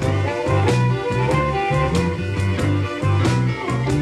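Electric blues band playing an instrumental passage with no singing: guitar over bass and a steady drum beat.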